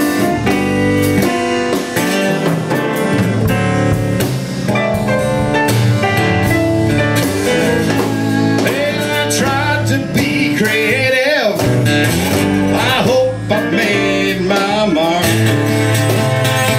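Live blues band playing an instrumental passage: guitar over keyboards and a bass line, with sliding, gliding guitar lines through the middle of the passage.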